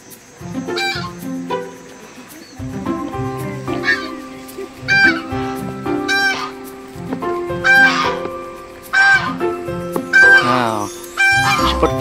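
Geese honking over and over, short calls coming about once a second and louder in the second half, over background music with long held notes.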